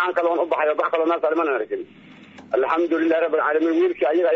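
Speech only: a voice talking, with a short pause a little under two seconds in. The sound is thin and narrow, like speech over a phone or radio.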